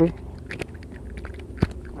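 Handling noise as a freshly caught fish on the line is grabbed by hand: scattered small clicks and taps, with one sharp click about one and a half seconds in, after a short exclamation at the start.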